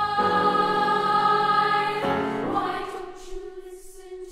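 Youth choir singing long held chords, with the chord changing twice and the singing dying away near the end.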